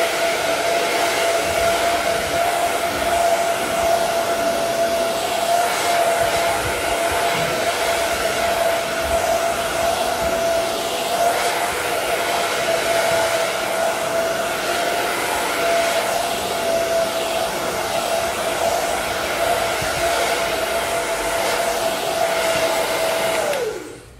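Handheld hair dryer blowing air to dry a wet screen-printing pallet, running steadily with a constant whine over the rush of air. It is switched off near the end, its pitch falling as it winds down.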